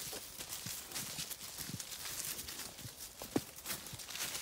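Footsteps of a person and a pig's hooves crunching through dry fallen leaves and pine needles, a rapid irregular crackle of steps, with one sharper snap about three seconds in.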